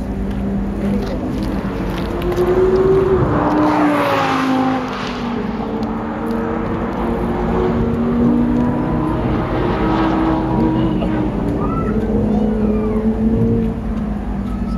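Audi car engines running close by on an autocross course. About three seconds in, one engine revs up and its note drops away as the car pulls off, the loudest moment. Engine notes hold steady through the middle and climb again near the end.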